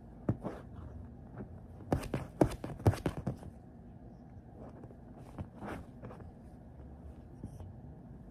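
A cockatoo biting and tugging at a plush toy on a couch: a run of sharp clicks, taps and scrapes from its beak and feet, busiest from about two to three and a half seconds in, with a few scattered taps before and after.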